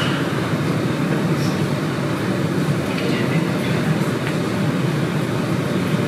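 A steady low rumbling noise, with faint voices murmuring.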